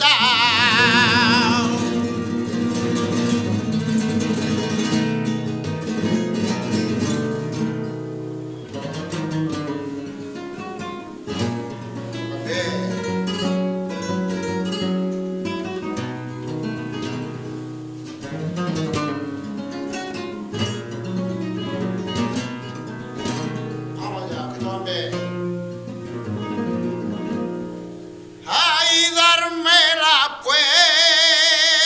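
Flamenco guitar playing a solo passage of a taranto between sung verses. A man's held, wavering sung note dies away in the first two seconds, and his singing comes back in near the end.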